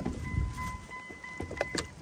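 Pickup truck's door-open warning chime, a steady electronic tone that sounds for about two seconds and stops just before the end, after a sharp click of the driver's door latch as the door swings open. A few faint clicks of handling follow about one and a half seconds in.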